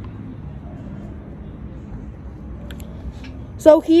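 Steady, low outdoor background rumble with a few faint clicks; a voice starts near the end.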